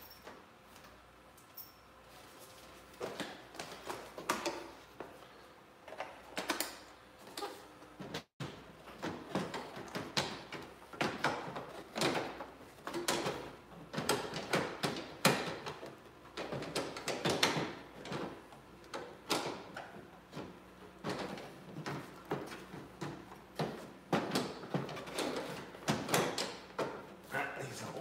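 A plastic tail light assembly being pushed and wiggled into its recess in a Porsche 991's rear bodywork: irregular knocks, clicks and scrapes of plastic against the panel, beginning about three seconds in. The sound cuts out for a moment about eight seconds in.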